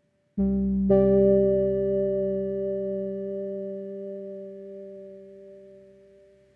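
Soft background piano music: a chord struck about half a second in and more notes added just after, left to ring and slowly fade away.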